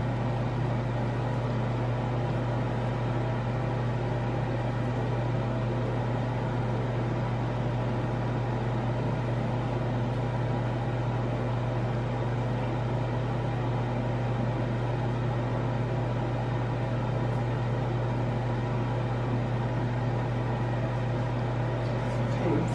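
A steady low mechanical hum that stays the same throughout, with no other sounds over it.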